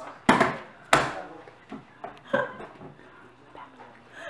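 Two sharp knocks on a wooden tabletop about two-thirds of a second apart, followed by a few fainter bumps.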